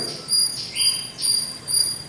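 High-pitched chirping that pulses about two to three times a second over quiet room noise, with a brief steadier tone just before the middle.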